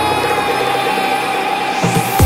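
Progressive electronic dance music in a beatless breakdown: held synth tones with no drums, and a noise sweep rising in pitch near the end.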